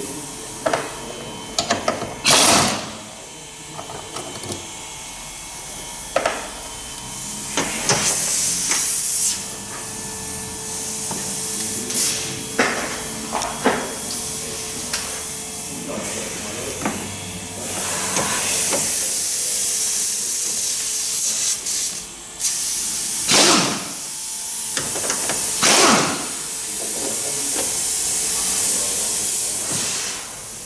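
Workshop disassembly noise in a van's engine bay: tool clicks and knocks, broken by about six short loud hissing bursts, with a steady hiss running through the second half.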